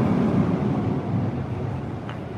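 Street traffic with a vehicle engine rumbling close by, easing off slightly toward the end.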